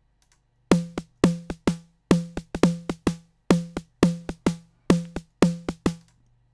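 Synthesized snare drum from FXpansion Tremor playing a sequenced pattern on its own, starting about a second in: quick, short hits at roughly four a second. Each hit has a pitched body under a noisy top, and the loudness varies from hit to hit as the pattern's velocity changes.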